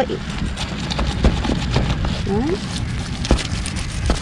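A knife scoring slits into the side of a whole carp on cardboard: irregular scrapes and knocks as the blade cuts through scales and skin.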